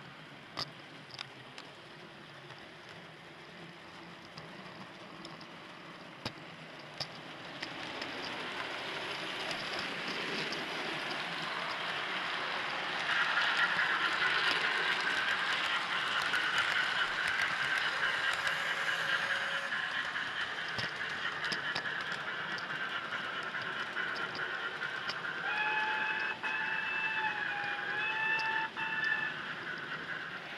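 Model railway locomotive pushing a camera-carrying tender along the track: a steady rolling rattle of small wheels on rail that grows louder about eight seconds in and again a few seconds later, with a few light clicks at the start. Near the end a held pitched tone sounds twice.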